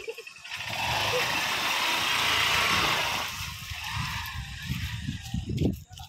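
Honda motorcycle engine being revved hard as the bike is ridden and pushed up a muddy slope. A loud rushing noise fills the first half, then the engine runs on in uneven low pulses.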